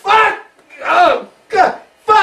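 A person's voice giving three loud wordless vocal outbursts in quick succession, the pitch rising and falling within each.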